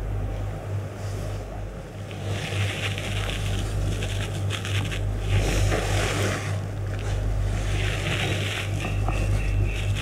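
Cloth rustling and scraping in short bouts as hands press and slide over cotton clothing and a mattress during a Thai stretching massage, over a steady low hum.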